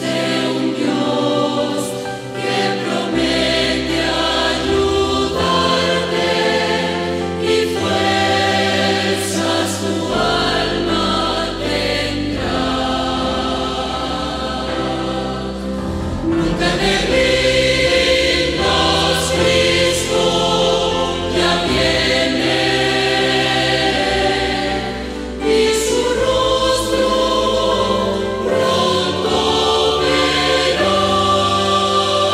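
A church choir singing a Pentecostal praise song, with instrumental accompaniment holding steady bass notes underneath.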